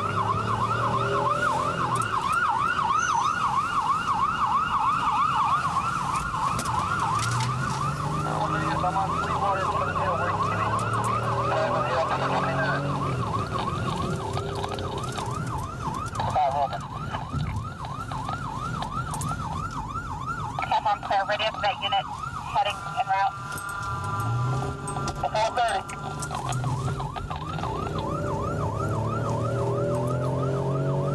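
Police car siren on a rapid rising-and-falling yelp, heard from inside a patrol car in pursuit. About two-thirds of the way in it briefly changes to other tones, including a steady blaring tone, then returns to the yelp. Underneath, the car's engine revs up several times as it accelerates.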